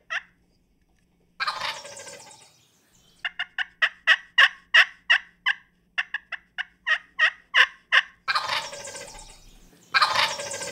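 Wild turkey gobbler gobbling twice, a rattling call that fades out over a second or so, about a second in and again near the end. Between the gobbles comes a long run of short, quick turkey yelps, several a second.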